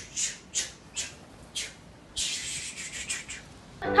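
A person shushing in a hush: several short "shh" hisses, then one long "shhhh".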